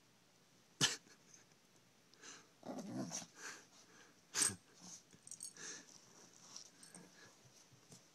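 A chihuahua scuffling against a stuffed toy elephant as it climbs onto it and humps it: quiet rustling and scuffling. Two sharp knocks stand out, about a second in and about four and a half seconds in.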